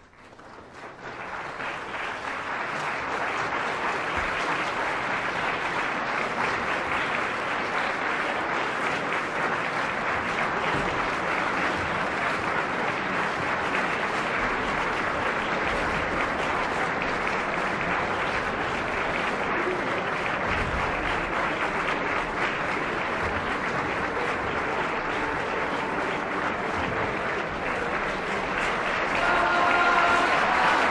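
Opera-house audience applauding after the end of an act finale, building up over the first two seconds and then holding steady. Near the end, voices rise above the clapping.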